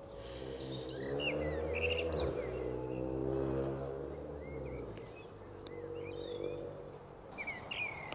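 Eurasian blackbird and European robin singing, short high notes scattered throughout. Under them a low engine-like drone swells over the first couple of seconds and fades out about five seconds in, returning faintly for a moment around six seconds.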